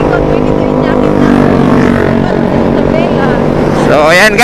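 Motorcycle engine running steadily while riding, its note falling slowly over the first two seconds or so as it eases off.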